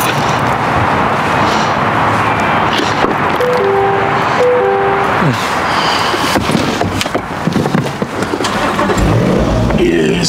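A car running steadily, with a few short chime-like tones about halfway through.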